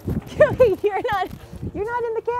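A woman's high-pitched laughter and wordless calls, in several short syllables that rise and fall in pitch.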